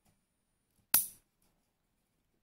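One short, sharp click about a second in, in an otherwise quiet room.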